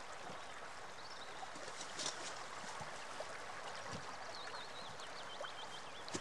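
River water flowing steadily over a shallow bed, an even rushing hiss, with a short run of high chirping notes near the end.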